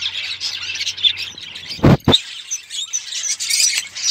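Budgerigars chirping and chattering continuously. A single loud thump about two seconds in.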